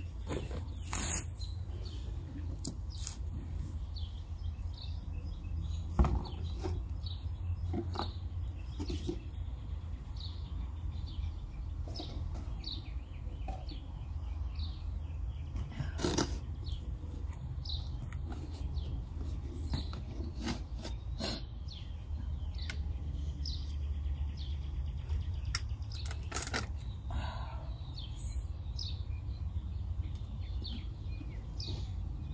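Scattered knocks and clicks from a plastic milk jug and potting soil being handled, the sharpest knock about six seconds in, over a steady low outdoor rumble. Faint bird chirps come through now and then.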